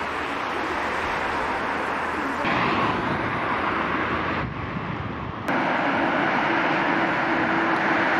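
Road traffic on a city street: an even rush of passing cars, the sound changing suddenly three times as shots are cut together, with a steady hum joining in for the last few seconds.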